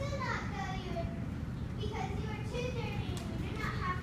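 Children's voices talking, high-pitched and indistinct, over a steady low room rumble.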